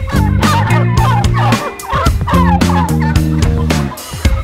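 Domestic white turkeys gobbling, a run of warbling calls through the first three seconds or so, heard over background guitar music with a steady beat.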